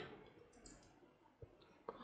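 Near silence with two faint short clicks, about a second and a half and two seconds in.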